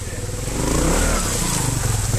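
Trials motorcycle engine revving as the bike climbs a rocky step close past the microphone. The note rises and gets louder about half a second in.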